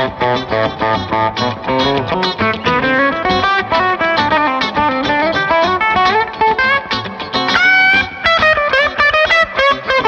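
Fender Player Plus Nashville Telecaster electric guitar played through an amp with reverb: a fast run of picked single-note riffs, then about eight seconds in a note bent up and held with vibrato before the quick phrases resume.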